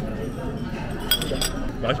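Two sharp, ringing clinks of stainless-steel chopsticks against tableware, a little past halfway.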